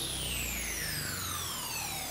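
A high tone gliding steadily down in pitch, an electronic downward sweep effect, over a low steady rumble.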